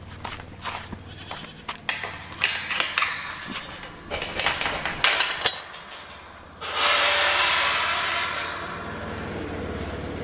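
Metal livestock gate clanking and rattling as its latch is worked and it is swung open, with goats bleating and a Polaris side-by-side UTV's engine running low underneath. About two-thirds of the way in the engine gets louder and stays up as the UTV pulls forward through the gate.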